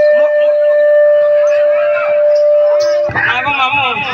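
A steady high tone, typical of microphone feedback through a PA system, rings over faint voices and cuts off about three seconds in as a loud voice comes in over the PA.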